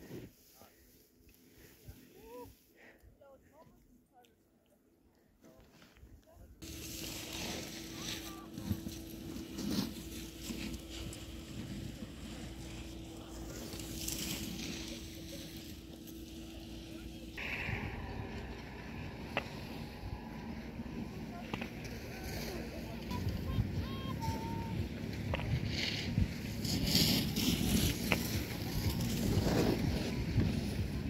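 Skis sliding and scraping over snow, with wind on the microphone. It is quiet for the first few seconds, then louder after a sudden jump about six seconds in, and grows rougher and louder toward the end.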